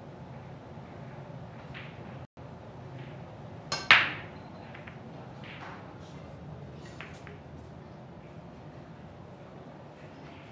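Break shot in Chinese eight-ball (heyball): one sharp crack about four seconds in as the cue ball smashes into the racked balls. Lighter clicks of balls knocking together and against the cushions follow over the next few seconds.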